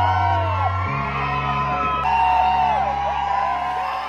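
Music over a hall sound system with sustained bass notes that change about a second in and again near two seconds, under a crowd whooping and yelling.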